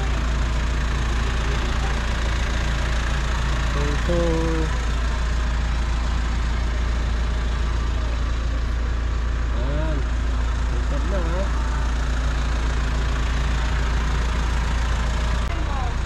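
A steady low rumble runs throughout, with faint voices in the background about four seconds in and again around ten seconds in.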